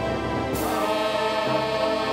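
A small group of men singing a hymn together in the Simalungun Batak language, holding long notes, with a new phrase beginning about half a second in.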